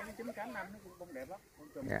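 Quiet, indistinct talking.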